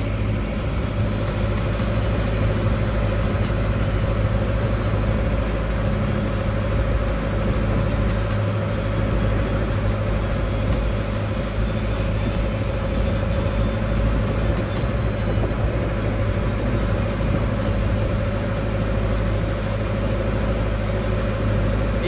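A small lake boat's engine running steadily under way: a loud, even drone with a low hum.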